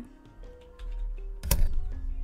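Background music with held notes, under computer keyboard typing, with one sharp keystroke or click about one and a half seconds in.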